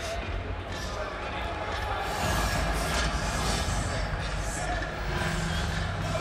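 Arena hubbub with amplified sound over the public-address system, the low end filled with music, growing louder about two seconds in.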